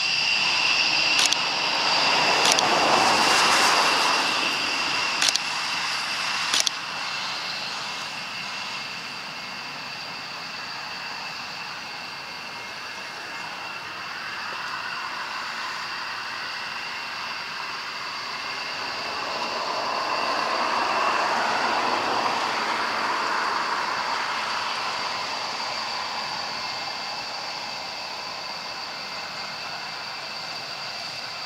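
Distant jet noise from a Rockwell B-1B Lancer's four turbofan engines: a roar that swells over the first few seconds, eases, then swells again around twenty seconds in, over a steady high whine. Several sharp clicks come in the first seven seconds.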